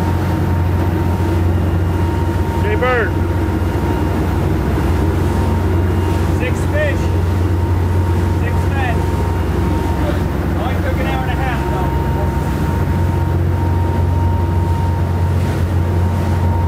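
Sportfishing boat's engines running at speed under way, a steady low drone with rushing water and wind, unchanging throughout.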